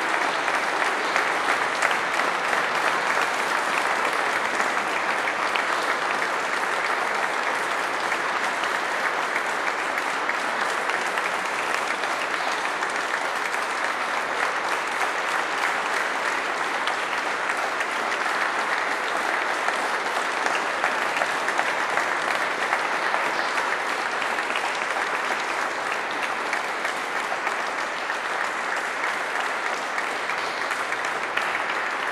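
Sustained audience applause: many people clapping in a dense, even patter that does not let up.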